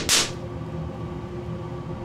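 Cesium metal reacting explosively as a drop of fuming nitric acid hits it: one short, sharp hissing burst just after the start. A steady low hum with faint held tones follows.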